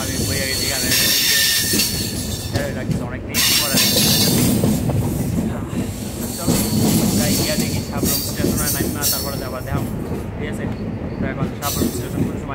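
Passenger train running on the rails, heard from the open doorway of the carriage: a continuous rolling rumble of wheels on track, with a high wheel squeal coming and going.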